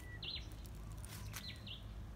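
Small birds giving a few short, high chirps that sweep downward, over a faint low background rumble.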